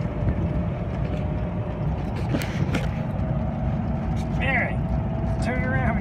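A golf cart drives along a road: a steady low rumble with a thin steady hum over it.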